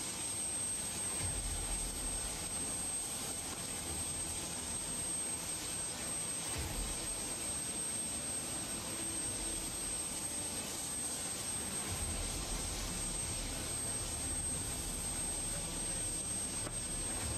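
Jet aircraft engine running steadily, a constant hiss with a thin high whine over it, and now and then a low rumble of wind on the microphone.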